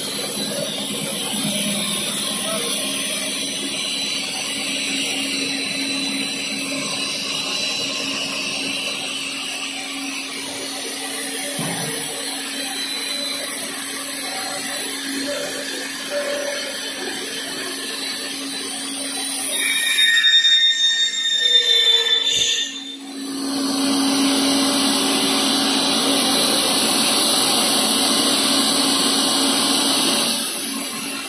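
HDPE pipe extrusion line running: steady machine hum and motor noise. About two-thirds through there is a brief louder, uneven patch and a short dip, after which the noise is louder and steady.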